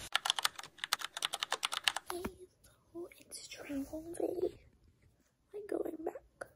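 A fast run of sharp clicks, about seven or eight a second, lasting about two seconds, followed by a few spoken words.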